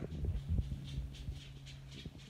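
Quiet room noise: a low steady hum with a few soft low thumps in the first second.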